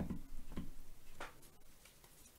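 A deck of cards being picked up and handled on a cloth-covered table: a few soft knocks and light clicks in the first second or so, then quieter.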